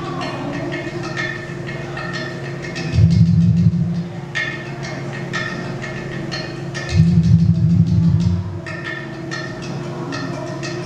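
Udu clay pot drum played in a rhythm of quick taps on the clay body. Two deep low tones come from the pot's hole, one about three seconds in and one about seven seconds in, each lasting about a second.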